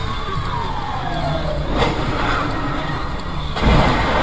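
Fire truck siren wail sliding slowly down in pitch over steady road noise. About three and a half seconds in, a sudden loud, deep crash of a vehicle impact.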